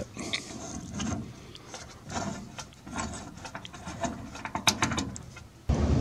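Irregular small metallic clicks and scrapes of a wrench loosening the nut on a whole-house humidifier's water-line fitting.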